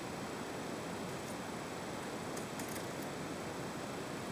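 Steady hiss of room noise, with a few faint light scrapes and ticks of a kitchen knife peeling the skin off a root vegetable held in the hand, clustered around the middle.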